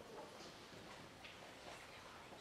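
Near silence: room tone in a hall, with a few faint clicks.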